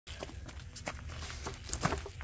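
A few light clicks and knocks of hands working at the stator cover of a 1985 Honda Shadow VT700's engine, the loudest near the end, over a steady low rumble.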